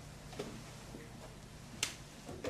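A soft tap about half a second in, then a single sharp click near the end, over a steady low hum.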